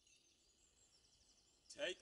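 Faint woodland ambience with distant birdsong, then a man's voice starts singing unaccompanied near the end.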